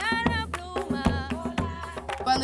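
Colombian tambora folk music: a hand drum beating a quick rhythm under a voice singing a melody.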